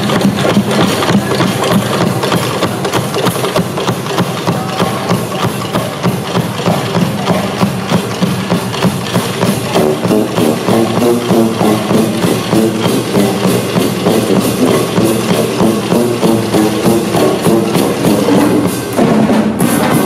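Brass band's drum section playing a steady driving groove on drum kit, snare and bass drums, with pitched notes joining in about halfway through. There is a brief break near the end.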